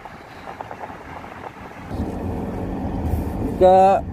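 Car engine and road rumble heard from inside a moving car, growing louder with a steady engine tone from about halfway through. A voice starts briefly near the end.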